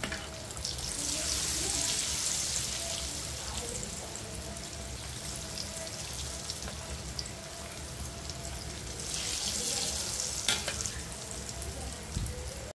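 Stuffed puran puris deep-frying in hot oil, a steady sizzle that swells and eases, with a few faint clicks. The puris are at the end of frying, golden brown.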